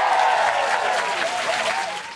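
Audience applauding at the end of a live rock song. A sustained ringing tone sounds over the clapping and sags slightly in pitch during the first second.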